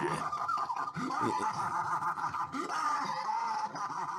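Prolonged laughter that runs unbroken through the whole stretch.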